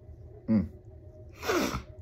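A man hums a short 'mm' while eating, then sneezes once, a sudden sharp burst of breath with a falling voice in it, about one and a half seconds in.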